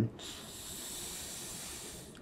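A man's long, deep breath in, a steady hiss of air lasting nearly two seconds, drawn on cue while a chiropractor's hands hold either side of his nose for a nasal adjustment.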